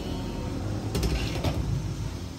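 Kitchen steamer on the stove with a low steady rumble, and two short clatters of cookware about a second in and again half a second later, as a layer of rice-flour cake is set to steam.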